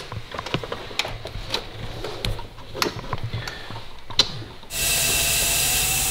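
Sharp clicks and knocks of an air-line coupling and fittings being handled, then about three-quarters of the way in a steady loud hiss of compressed air starts as the turbocharged Golf's intake tract is pressurised for a boost leak test.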